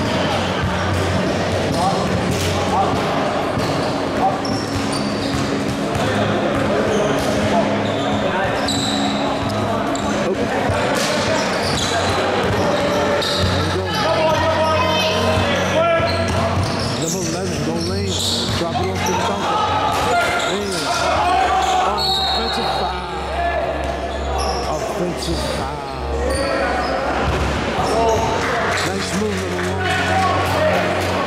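Live basketball game in a large, echoing gym: the ball bouncing on the hardwood court amid overlapping voices of players and spectators calling out, over a steady low hum.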